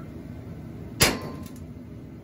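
A single sharp metal bang about a second in, with a short ring after it: the freshly stick-welded steel seat-mount bracket on the race car's roll-cage bar is being hit hard to test whether the weld holds.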